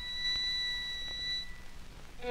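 A violin holding one very high, thin note that fades out near the end, on an old 1939–40 recording with low background rumble.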